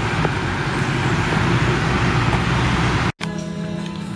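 Steady road-traffic noise from a street, cut off abruptly about three seconds in and replaced by background music with held notes.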